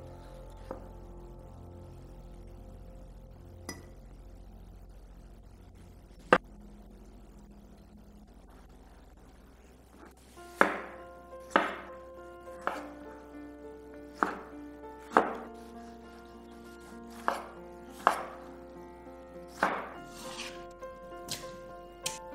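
Chef's knife cutting tomatoes on a bamboo cutting board: sharp knocks of the blade on the wood, a few scattered ones in the first half, then a run of about one a second in the second half, over background music.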